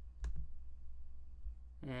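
A single sharp computer-mouse click about a quarter second in, over a low steady hum. A man's voice starts speaking near the end.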